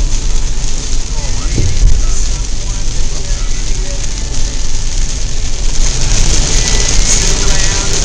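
Heavy rain beating on a car's windshield and roof from inside the moving car, over tyre and road rumble; the rain hiss grows louder in the last few seconds.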